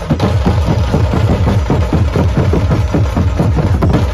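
Dhumal band drumming: large stick-beaten drums played in a fast, even beat over a steady deep bass.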